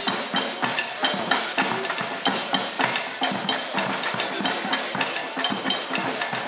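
Percussion music: drums and sharp, wood-block-like strikes in a quick, even rhythm.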